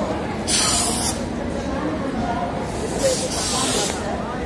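Two short bursts of hissing, the first lasting about half a second from half a second in, the second about a second long near the end, over a steady background of voices.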